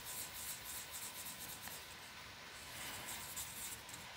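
Felt-tip marker colouring in a small circle on paper: faint, quick back-and-forth scratching strokes of the tip, thinning out in the second half.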